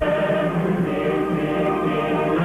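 A choir singing a Moroccan national song over musical accompaniment, coming in suddenly right at the start.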